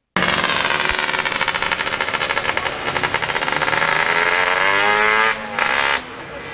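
Racing motorcycle engine revving in the pits, its note climbing steadily for about four seconds, then falling away briefly and picking up again near the end.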